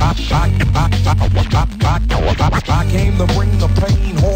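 Hip hop music with a heavy, steady bass line, and a vocal cut up in short back-and-forth strokes by turntable scratching over the beat.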